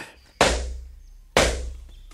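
Two heavy struck blows about a second apart, each ringing out briefly over a low steady hum: a radio-play sound effect signalling that the stage performance is about to begin and the curtain to rise.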